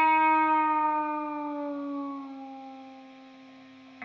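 Distorted electric guitar, a Gibson Les Paul through a Randall RM100 amp with a 1959RR Plexi-style module, holding one sustained note on its own with no backing. The note sags slightly in pitch and slowly dies away over about four seconds.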